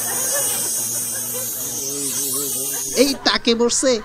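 Voices: a low, fairly level voice under a steady hiss, then loud, lively voices breaking in about three seconds in.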